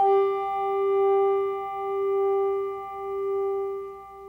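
Malmark G4 handbell struck once with the felt-covered soft lobe of its clapper, giving a very soft, muted sound: a single ringing G note whose tone swells and fades in slow waves about once a second as it dies away.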